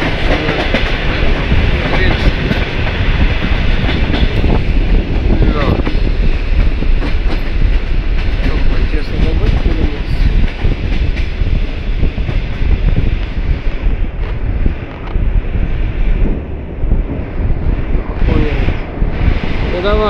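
ER2R electric multiple unit running at speed, heard from inside the carriage: loud, steady running noise from the wheels and rails, with repeated clicks of the wheels over the rail joints.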